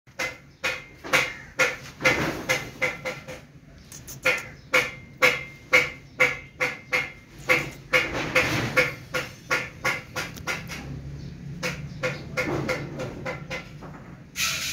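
A rapid series of short animal calls, about two to three a second, loudest and most regular in the first half, over a low steady hum.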